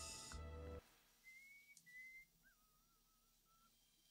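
A held musical chord cuts off less than a second in. Near silence follows, with faint, wavering whistled notes: two short ones, then a longer, meandering one.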